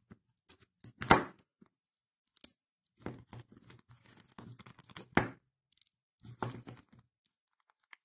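Dishwasher drain pump's rotor shaft being rocked by hand inside its plastic impeller housing, giving irregular clicks and short scraping rattles, loudest about a second in and again around five seconds. The knocking is the play of the shaft in its worn graphite bushings, the wear that makes such pumps stop working.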